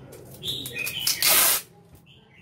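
Recorded bird calls chirping from a bird-trap horn speaker, with a loud harsh rasp of about half a second just past the middle as packing tape is pulled off its roll.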